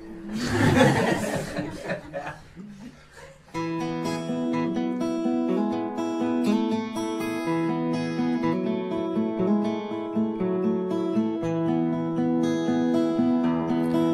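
Acoustic guitar playing an instrumental passage of picked notes in a repeating pattern, starting a few seconds in. It follows a short, loud rush of noise at the start.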